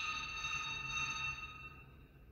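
African grey parrot holding one steady, whistled note that stops near the end.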